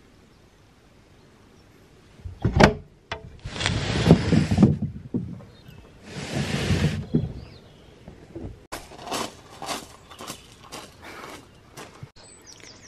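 Footsteps crunching on a gravel driveway, a quick run of steps through the last few seconds. Before them come a single knock and two longer bursts of rushing noise.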